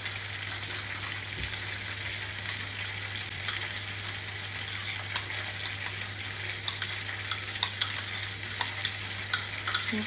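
Breaded chicken deep-frying in vegetable oil in a Dutch pot: a steady sizzle with scattered crackling pops that come more often in the second half.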